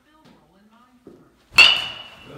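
Baseball bat hitting a ball in one swing about a second and a half in: a sharp crack with a ringing tone that fades over about half a second.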